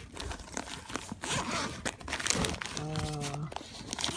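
Plastic bags crinkling and rustling as hands rummage through a packed picnic bag, with a short steady voiced sound from a person about three seconds in.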